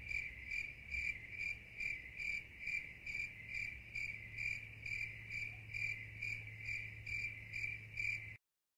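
Cricket chirping sound effect: a steady high chirp repeated about three times a second, over a faint low hum.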